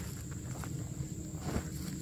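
Footsteps in grass and the rustle of fabric as a camouflage military sleep-system bag is carried over and spread out on a ground cloth, with a few faint soft knocks in the middle.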